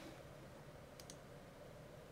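Near silence: room tone, with a couple of faint clicks about halfway through.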